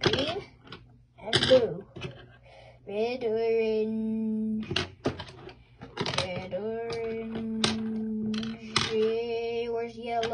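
A voice humming long, steady notes from about three seconds in, with a short break near the middle, over sharp clicks and clatters of colored pencils being handled and put away.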